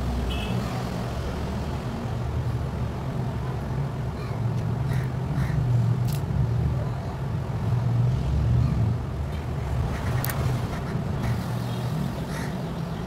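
A steady low rumbling hum that swells and fades slowly, with a couple of short sharp clicks about halfway through and near the end.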